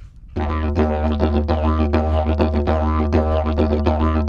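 Digibone, a slide didgeridoo, playing a rhythmic riff: a steady low drone with quick, regular rhythmic pulses over it, starting about half a second in.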